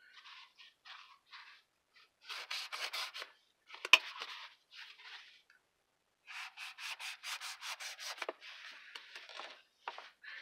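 A long knife blade sawing into foam, trimming a foam sword's crossguard in quick back-and-forth strokes of about four a second. A few faint strokes come first, then two longer runs, with one sharp click about four seconds in.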